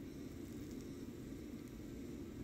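Faint steady room tone: a low, even background hiss with no distinct events.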